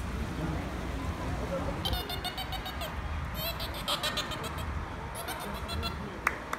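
A dolphin making a run of very high squeaks and rapid clicking pulses, starting about two seconds in, over wind rumbling on the microphone.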